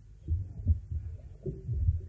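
Several soft, dull low thumps at irregular intervals, with no music or speech.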